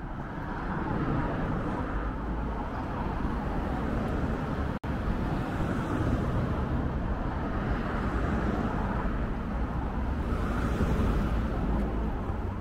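Road traffic on a city street: a steady low rumble and tyre noise from passing cars, swelling as vehicles go by about a second in and again near the end. The sound cuts out for an instant about five seconds in.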